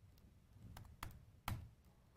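A few faint, separate keystrokes on a computer keyboard, spaced roughly half a second apart, over a low room hum.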